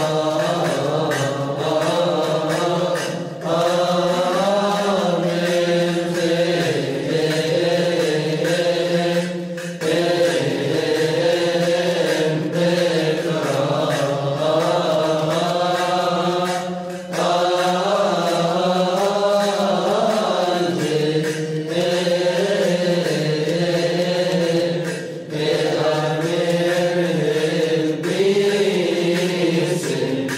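Coptic Orthodox monastic chant: men's voices sing a long, wavering melismatic line over a steady low held note, breaking off briefly for breath every several seconds.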